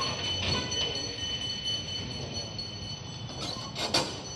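Steady rumble of an idling delivery truck engine, with a few short knocks near the start and again near the end as a mattress is handled at the back of the truck's cargo box.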